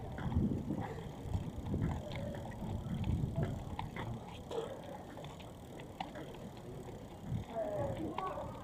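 Quiet city street ambience: low rumbling noise that swells and fades every second or so, with scattered light clicks and a few faint distant voices.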